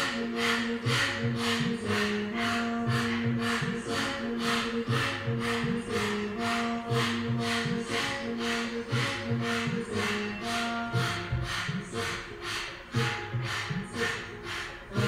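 Rapid, forceful breathing in and out through the mouth with the tongue out, kundalini yoga breath held in bow pose, about three strokes a second and very regular. Background music with a repeating bass line plays underneath.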